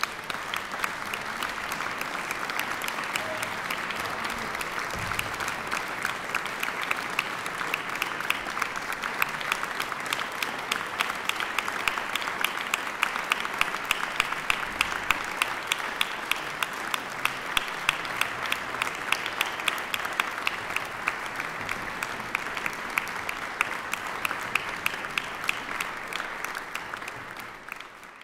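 Concert audience applauding steadily at the close of a piece, dying away near the end.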